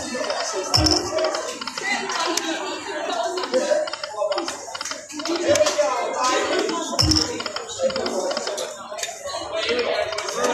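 A poker machine's reels spinning over and over, with its electronic spin and reel-stop sounds, under indistinct voices. Two low thumps stand out, about a second in and about seven seconds in.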